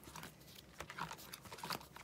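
Plastic sleeve pages of a ring binder being turned by hand: a run of light clicks and crinkles, several in quick succession.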